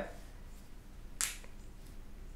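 A single short, sharp click a little over a second in, over faint steady background hiss.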